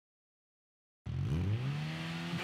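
Suzuki GSX-S 1000's inline-four engine running through an SC-Project CR-T slip-on muffler. The sound comes in suddenly about halfway through, its pitch rising briefly and then holding at a steady idle.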